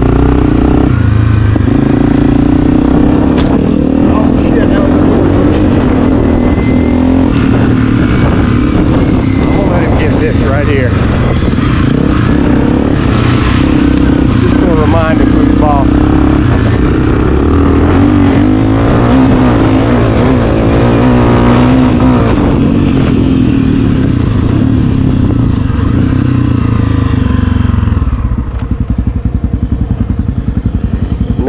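Honda CRF250F four-stroke single-cylinder dirt bike engine running under load, its revs rising and falling as it is ridden around a dirt track, with wind on the helmet microphone. The engine eases off near the end.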